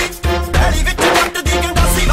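Background music with a heavy, pulsing bass beat.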